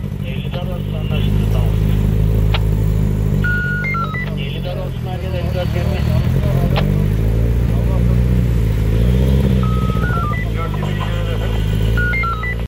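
Street traffic: vehicle engines running in a steady low drone, with indistinct voices and a short electronic beeping tune that repeats three times.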